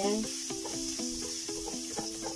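Minced garlic sizzling in hot oil in a nonstick wok as it is stirred with a silicone spatula, under louder background music: a plucked-string tune with quick repeated notes.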